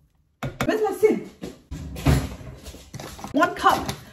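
A woman speaking, after a brief dead silence at the start.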